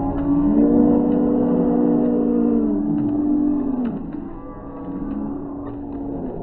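Spectators yelling long, drawn-out cheers for the sprinters, several voices held for about three to four seconds, then trailing off about four seconds in.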